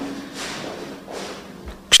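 A man's soft breaths, twice, in a pause between spoken sentences, over a faint steady room hum, with a brief low thud just before he speaks again.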